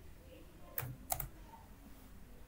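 Two faint keystrokes on a computer keyboard about a second in, a third of a second apart: a full stop typed and Enter pressed.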